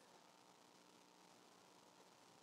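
Near silence: faint room tone with a low hiss, during a pause in the preaching.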